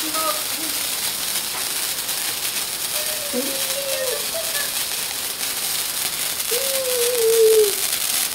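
Heavy rain falling steadily, a dense even hiss. A person's drawn-out voice sounds twice over it, about three seconds in and again near the end.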